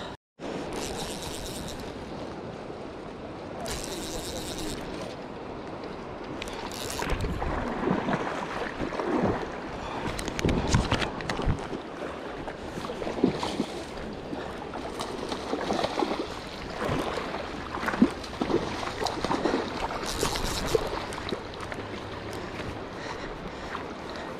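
River water flowing and splashing close to the microphone, with wind noise and scattered short knocks and rustles.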